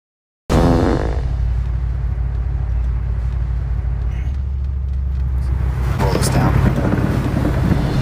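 A car's engine and road noise droning steadily inside the cabin, starting suddenly about half a second in, with brief indistinct voices over it.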